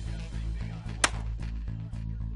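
A single shot from a Springfield Armory XD(M) .45 ACP pistol, sharp and brief, about a second in, over background music.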